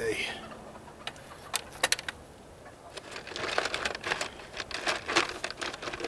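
Small pieces of cast lead (sprue cut-offs and buckshot) clicking and clinking together as they are handled, a few scattered clicks at first and a denser run of clinks in the second half.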